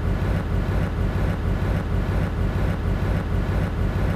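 Steady low engine rumble with a constant hum, running evenly and unchanged.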